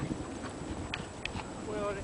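Dogs playing together on sand: a few short, light clicks and scuffles over a steady wind rumble, then a person calling "Bailey!" near the end.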